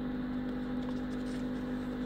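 Steady low machine hum, one strong tone with fainter overtones, even throughout; no snipping is heard.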